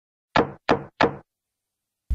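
Three knocks on a door in quick, even succession, about a third of a second apart, each dying away fast.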